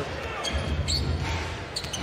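Basketball being dribbled on a hardwood arena court over the steady noise of the arena crowd, with a couple of short high squeaks, one about a second in and one near the end.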